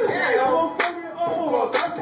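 Hands clapping to a steady beat, about one clap a second, twice here, over a voice that slides up and down in pitch.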